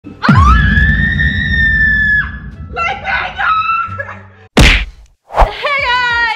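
A woman screaming: one long, shrill scream that drops off after about two seconds, then more broken shrieks, with a low rumble underneath. A short sharp burst comes near the end, and her voice starts again just before the cut.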